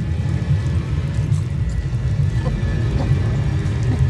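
Low, droning horror-film score with a steady deep rumble underneath.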